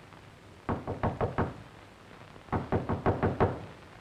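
Knocking on a door in two bouts: about five quick knocks a second in, then six or seven more around the middle.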